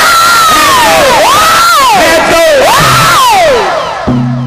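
A man's loud, high-pitched battle-cry wail into a microphone, swooping up and falling three times, with the instruments stopped.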